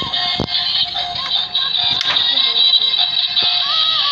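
Battery-operated toy Tata Nano car playing its built-in electronic tune with a synthetic singing voice, over a steady high whine and a few clicks.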